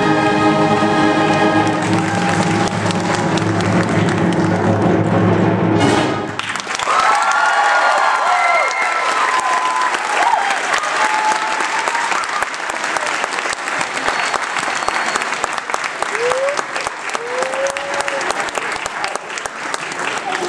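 A high school symphonic band holds a final chord with brass prominent, which cuts off about six seconds in. The audience then breaks into applause with a few shouted cheers.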